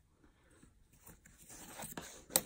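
Near silence, then faint rustling and scraping of a thin card part being handled and pressed on a cutting mat, a little louder in the second half.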